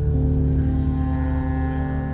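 Background music: a low sustained drone with held notes, and a higher held note entering just after the start.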